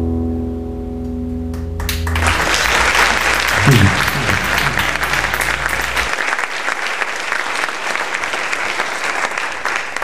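Two acoustic guitars' final chord ringing and dying away, then an audience applauding, with a short shout about four seconds in.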